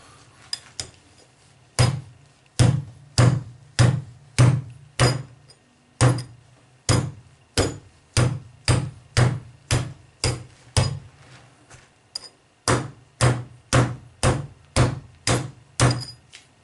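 Small axe striking a butted-ring steel chainmail arm guard worn over a leather layer on the forearm, in a run of sharp metallic blows about two a second, with a brief pause a little after the middle. The mail turns the blade: no rings are cut or knocked open.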